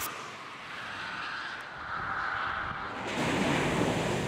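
Cars passing at speed on a test track: a steady rush of tyre and wind noise that grows louder, swelling further about three seconds in.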